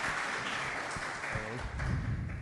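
Audience applause fading away, with a few voices talking over it near the end.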